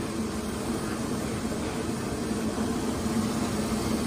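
Pot of vegetable soup cooking on a stove burner: a steady low rumble with a hiss over it.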